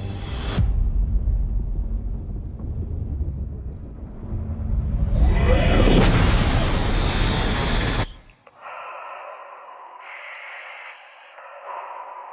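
Film-trailer sound design with music: a low rumble that swells into a loud rushing noise with sweeping rising and falling pitch glides, cutting off abruptly about two-thirds of the way in. A quieter, thin and tinny sound follows until the end.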